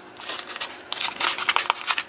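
Molded paper-pulp packaging crackling and crunching as it is flexed and twisted, with irregular small clicks, while a padlock zip-tied into it is worked free.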